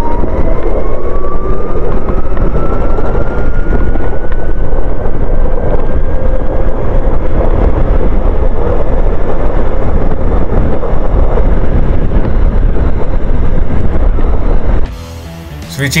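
Ather 450X electric scooter accelerating: a thin motor and drivetrain whine rises in pitch as speed climbs toward about 49 km/h in Eco mode, then holds steady, under heavy wind rumble on the handlebar microphone. It cuts off abruptly near the end.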